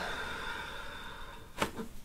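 A person breathing out slowly and fully, a long airy exhale lasting about a second and a half, as cued before a chiropractic back adjustment; a short sudden sound follows near the end.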